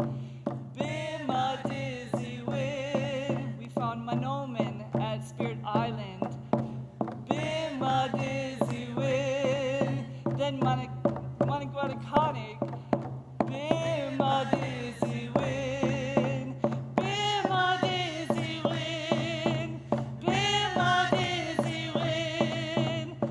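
Women's voices singing together in phrases with a light vibrato, over a steady, even beat on hand drums struck with beaters.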